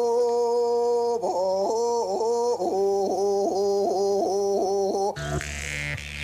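Music: a single melody line of short, repeated stepped notes that get quicker toward the middle, cutting off suddenly about five seconds in. A different sound with a steady low hum takes over.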